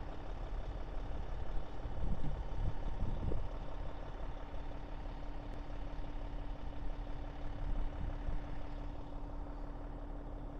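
A heavy diesel engine idling steadily, with a steady hum that sets in about three seconds in.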